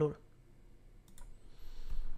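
Two quick clicks a little over a second in, like a computer click advancing a presentation slide, then a low thump near the end; otherwise quiet room tone.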